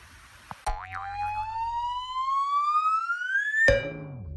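A rising whistle-like sound effect: a single tone starts suddenly and glides steadily upward for about three seconds, then cuts off abruptly. Music begins near the end.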